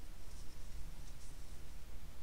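Faint scratching of a crochet hook pulling cotton yarn through stitches, with a couple of soft rasps about half a second and a second in, over a steady low hum.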